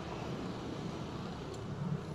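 Steady low background rumble, with a faint click about one and a half seconds in.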